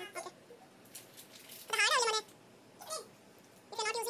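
A high-pitched, wavering vocal call, about half a second long, bending up and then down about two seconds in, with shorter, fainter calls near the end.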